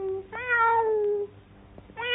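A cat meowing once: a single drawn-out meow of about a second that falls slightly in pitch.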